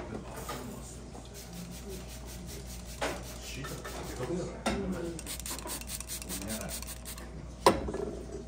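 A pastry-type brush being dabbed and stroked over steamed abalone on a ceramic plate, glazing them with sauce: light, quick rubbing strokes. There are a couple of soft knocks in the middle, and a sharp clack just before the end is the loudest sound.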